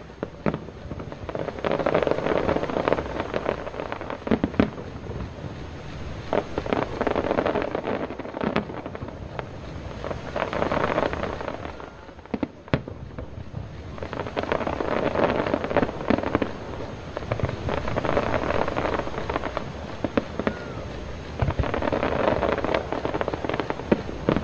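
Aerial fireworks bursting and crackling in quick succession, the volleys swelling and easing in waves, with a few sharper single bangs standing out.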